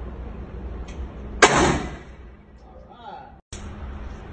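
A single gunshot about a second and a half in, a sharp crack with a short echoing tail inside an indoor range, over a steady low hum. Near the end the sound drops out for a moment.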